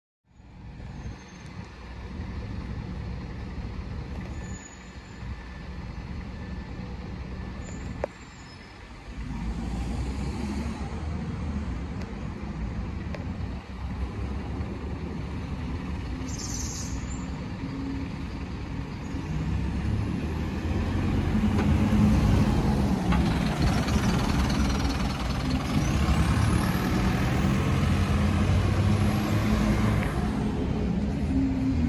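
Bus engines running at a bus station, with a short air-brake hiss about halfway through. In the second half it gets louder as a single-decker bus pulls away, its engine note rising and falling.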